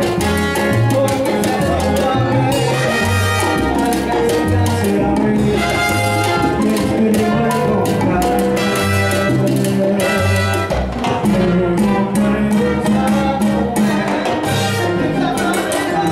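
Live salsa-style Latin band playing through a PA: a stepping bass line, keyboard and steady percussion, with a bright melodic riff coming back every few seconds.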